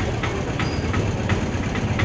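Engine of a small goods vehicle idling close by, a steady low rumble.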